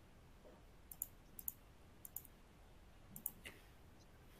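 Faint computer mouse clicks, several quick pairs of sharp clicks over near-silent room tone.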